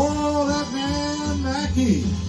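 Male singer holding one long note over a big-band backing track, the note dropping away near the end.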